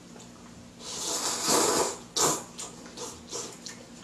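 A man slurping up a mouthful of ramen noodles: one long, noisy suck about a second in, then a second short sharp slurp, followed by a few small wet chewing smacks.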